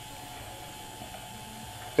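Geared windshield-wiper-motor power feed on a Sieg X2 mini mill running at full speed on 12 volts: a quiet, steady whir with a faint thin whine.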